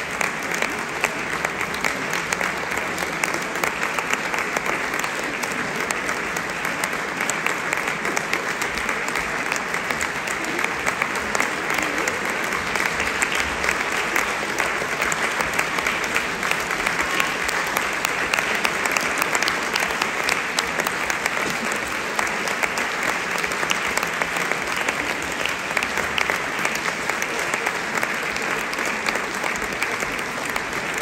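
Audience applauding steadily, many hands clapping at once in an even, unbroken wash.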